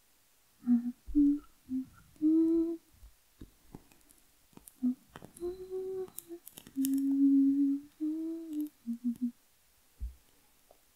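A woman humming a slow, wordless tune with her mouth closed: short low notes broken by a few longer held ones, in phrases with brief pauses. A few faint clicks fall between the phrases.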